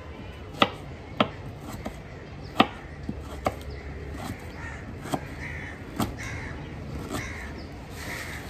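Kitchen knife slicing red onion on a wooden chopping board: irregular sharp taps of the blade striking the board. A bird calls several times in the background from about halfway.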